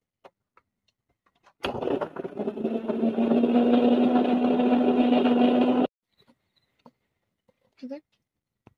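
Electric mixer-grinder running with its jar lid held down, grinding a wet paste: the motor starts abruptly, its hum settles to a steady pitch after a moment, runs for about four seconds and cuts off suddenly.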